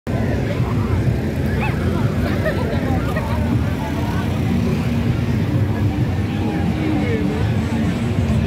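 Outdoor crowd chatter, many voices talking at once in the background over a steady low rumble.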